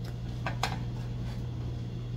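Two light clicks of kitchenware being handled, about half a second apart, as the plate and baking tray are set down and moved, over a steady low hum.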